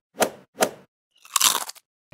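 Cartoon sound effects for an animated burger being stacked and bitten: two short pops, then a louder crunching bite about one and a half seconds in.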